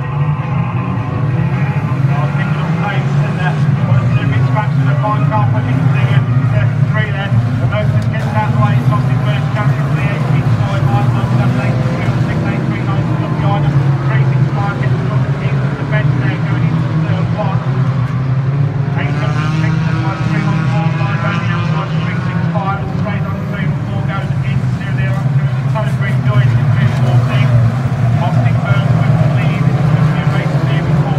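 A pack of banger race cars lapping the oval track together, their engines blending into one steady, continuous noise.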